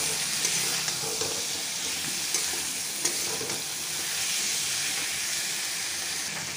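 Potatoes, onions and masala frying in oil in a metal kadhai, sizzling steadily, while a flat steel spatula stirs freshly added chopped tomatoes into them with occasional light scrapes against the pan.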